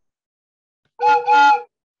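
Wooden train whistle blown in two short toots about a second in. Each toot is a steady, loud chord of several tones sounding together.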